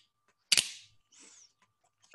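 A sharp puff of breath forced through the valve of a respiratory muscle training mask about half a second in, fading quickly, followed by a fainter, shorter hiss of air about a second in.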